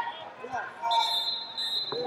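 Voices calling out in a large, reverberant hall, over a steady high tone that starts about a second in, with one sharp slap near the end.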